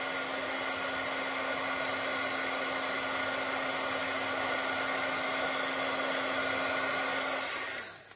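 Embossing heat tool running steadily, its fan blowing hot air with a low hum, melting black embossing powder on black cardstock; it is switched off near the end.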